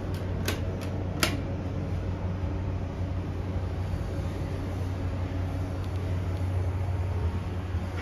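Two sharp clicks from the elevator's push-button car panel, about half a second and a second in, over a steady low hum from the 2001 ThyssenDover hydraulic elevator's machinery as the car operates.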